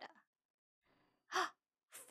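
A woman's soft breath and then a brief voiced sigh, about a second and a half in, with quiet around them.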